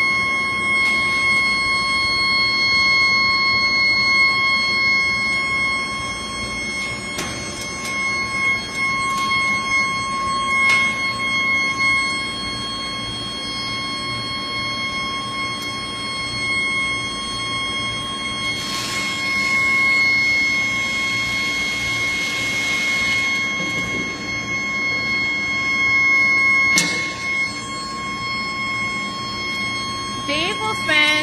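Steady high-pitched whine of a foundry induction furnace holding a melt of ductile iron, with a second, higher tone above it and a constant machinery din underneath. A few sharp knocks come through, and a stretch of rushing noise rises and falls about two-thirds of the way in.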